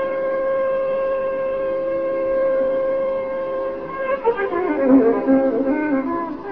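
Carnatic classical music in raga Begada: one long, steady held note, then from about four seconds in, quick ornamented glides sweeping up and down the scale.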